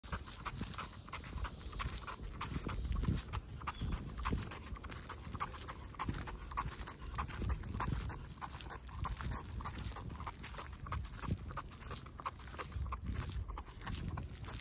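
A Cavalier King Charles spaniel walking on a leash over wet asphalt, panting in a quick, even rhythm, with the patter of its steps and the walker's footsteps.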